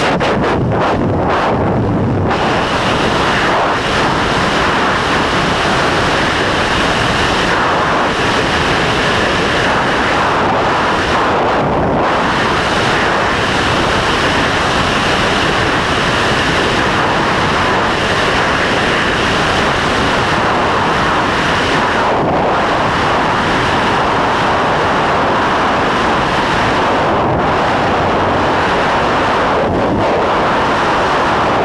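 Loud, steady rush of freefall wind buffeting a wrist-mounted camera's microphone during a tandem skydive.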